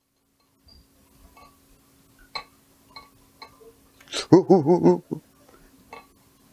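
A short wordless vocal sound with a wavering pitch about four seconds in, over a quiet room with a faint steady hum and a few faint light clicks.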